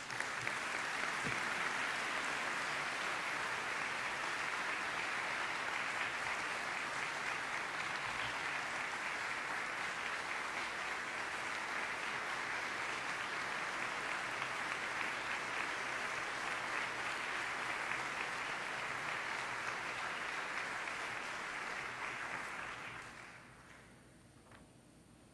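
Audience applauding, starting at once, holding steady for about twenty seconds, then dying away near the end.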